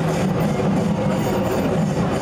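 Loud, dense music playing steadily.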